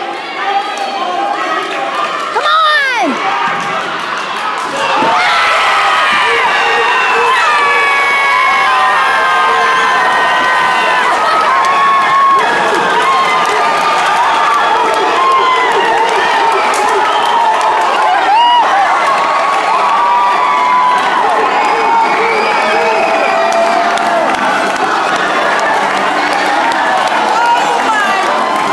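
A high school basketball crowd in a gym cheering and yelling at a buzzer-beating, game-winning dunk. The noise jumps up sharply about five seconds in and stays loud, a mass of many voices with a few high yells standing out.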